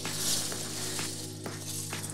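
Background music: steady held low notes with a soft click about twice a second, and a hissing wash in the highs near the start.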